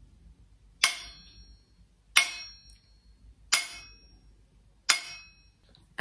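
A saucepan tapped with a kitchen utensil, four single strikes about a second and a half apart, each ringing briefly like a metal bell.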